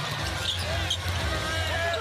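Basketball being dribbled on a hardwood arena court, with short sneaker squeaks and crowd noise behind it.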